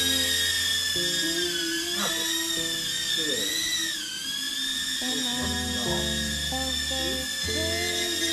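URANHUB UT10 micro toy drone's tiny propeller motors whining steadily as it hovers and flies, the pitch wavering and dipping briefly about halfway through. Background music plays underneath.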